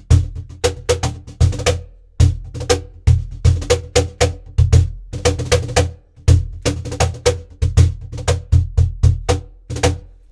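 Cajon played with the bare hands: a groove of deep bass strokes and sharp slaps, with drags (two quick soft grace notes just before a main stroke) worked in more than ten times. The playing pauses briefly about two and six seconds in.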